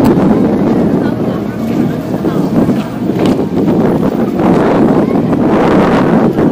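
Wind buffeting the microphone in loud, uneven gusts over the chatter of a large outdoor crowd.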